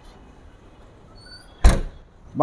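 Boot lid of a 2000 Toyota Corolla G sedan shut with a single heavy slam about one and a half seconds in.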